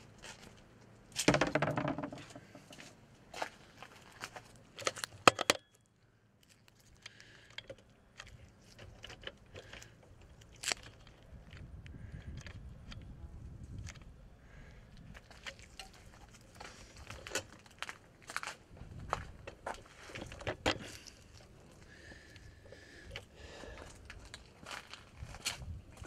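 Scattered clicks, knocks and rustling of handling, loudest about a second in and again near five seconds, with a low wind-like rumble in stretches later on.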